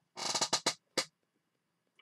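A short clattering rattle, then a single sharp click about a second in, as a 16-pin DIP logic chip is handled and set into the plastic ZIF socket of a TL866II+ programmer.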